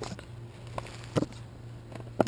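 Screwdriver driving a screw through a kiteboard's rubber grab handle into the board insert: a few short clicks over a low steady hum.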